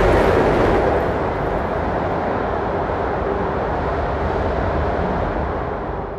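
Dense, rumbling wall of noise in an acousmatic (electroacoustic) composition, loudest at first and fading out near the end.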